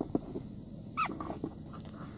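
Slow-moving vehicle heard from inside the cab, with a steady low engine hum, a few light knocks near the start and a short falling squeak about a second in.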